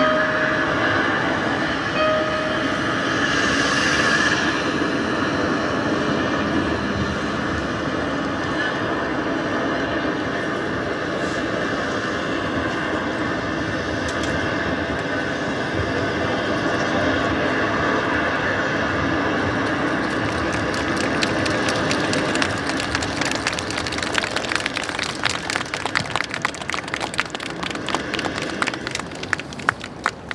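Steady outdoor din with a continuous low rumble and some held tones. In the last ten seconds it fills with many quick, irregular sharp claps or taps.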